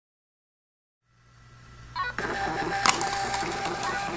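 Seiko Instruments portable thermal printer printing a report, its print head and paper-feed motor running steadily. It starts about a second in and gets louder about two seconds in, with a sharp click near the end.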